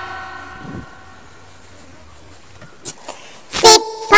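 Children's alphabet song: the last sung note fades out over the first second or so, then a short pause, and a loud sung syllable starts the next line near the end.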